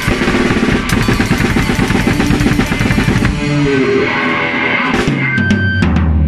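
Live jam-session band: a drum kit playing a busy pattern under bass and electric guitar. About halfway through the drums drop out and held bass and guitar notes ring on, with a few last sharp hits near the end.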